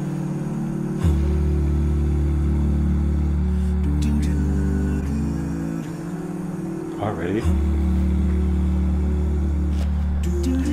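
An a cappella vocal group humming sustained chords, under a deep bass voice holding a low note that drops out around the middle and comes back about a second and a half later.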